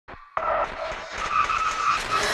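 TV static hiss as a VHS-style sound effect. It starts suddenly a moment in and carries a faint steady whine.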